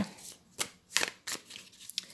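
A deck of tarot cards being shuffled by hand: a handful of short papery card snaps with quiet gaps between.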